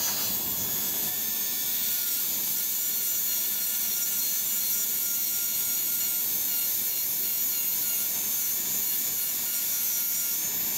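Dental handpiece running with a steady high whine as its bur trims a provisional crown back to the marked line.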